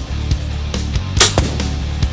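Rock background music with a steady beat, cut by a loud sharp crack a little over a second in as the BowTech Assassin compound bow is shot, with a second, smaller crack just after.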